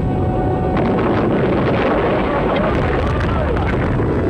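Vostok launch vehicle's rocket engines firing at ignition and liftoff: a loud, steady roar that thickens about a second in.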